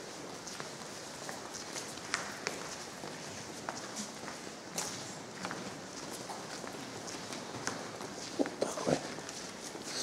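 Irregular footsteps of people walking on a cathedral's stone floor, with a few louder steps near the end.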